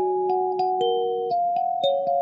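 Lingting K17P kalimba (thumb piano) playing a slow melody, about seven plucked metal tines in two seconds. Each note starts with a short click and rings on into the next.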